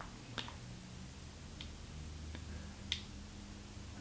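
A knife blade shaving small bits off a triangular Maped eraser, heard as a few faint, scattered clicks, the clearest about three seconds in, over a faint low hum.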